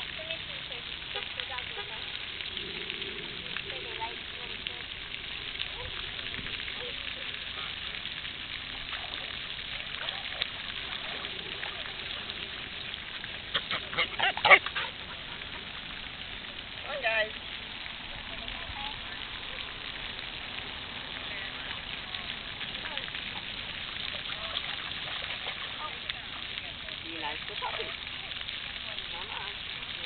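Outdoor ambience with a steady hiss and faint, indistinct voices in the distance. About halfway through comes a quick series of loud, sharp calls, and a shorter one follows a few seconds later.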